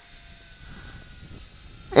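Quiet background with a faint, steady whine from the distant Tarantula X6 quadcopter's motors and propellers in flight.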